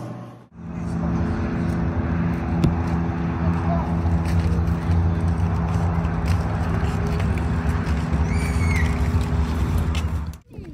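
A steady low mechanical hum with a rumble underneath, holding one even pitch throughout. A brief high voice is heard faintly near the end.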